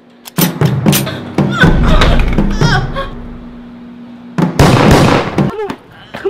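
Dramatic film soundtrack: sharp knocks and thuds and a shouting voice over music, then a loud burst of noise lasting about a second near the end.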